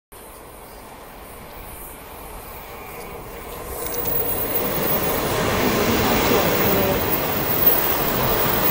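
Taiwan Railways Fu-Hsing express train pulling into an underground station platform. The rumble of the locomotive and coaches grows steadily louder as the train arrives and runs past.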